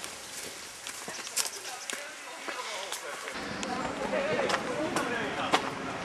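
Untranscribed voices talking, louder and fuller from about halfway through, over scattered footsteps and small knocks on a dirt forest path.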